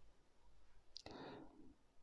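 Near silence: room tone in a small room, broken about a second in by a faint mouth click and a short intake of breath from a man pausing in his talk.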